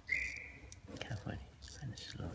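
A hand tool scraping OCA glue off a phone screen held in a glue-remover mold, with a short high squeak near the start and a few soft scrapes after it.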